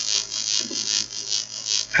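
Steady recording hiss with a low electrical hum underneath, and no distinct sound event.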